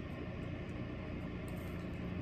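Steady room tone: a low, even hum and hiss of background noise, with no distinct handling sounds.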